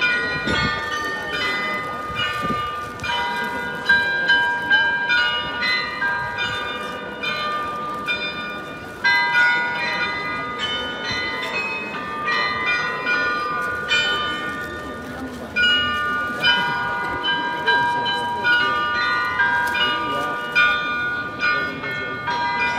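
The bells of the Munich Rathaus-Glockenspiel playing a tune: struck bell notes, each ringing on under the next, in phrases with short breaks between them.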